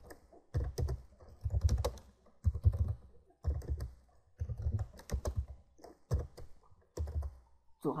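Typing on a computer keyboard in short bursts of keystrokes, about one burst a second with pauses between. Each burst carries a dull low thud.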